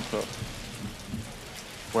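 Steady rain falling, an even dense hiss throughout. A man's voice comes in at the very end.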